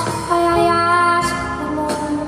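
A woman singing a held melody into a microphone over a live band of electric guitar, drums and piano.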